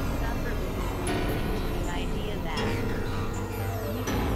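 Experimental synthesizer noise music from a Novation Supernova II and Korg microKorg XL: a constant low drone under a dense mass of gliding, sweeping tones that rise and fall, with a few held tones near the end.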